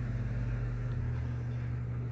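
A steady low hum with a constant deep tone, its very lowest rumble dropping away about a second in.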